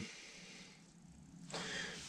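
Quiet room tone, then a faint breath drawn in through the nose or mouth near the end.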